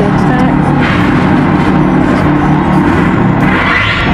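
Music with steady held low notes and swelling higher sounds.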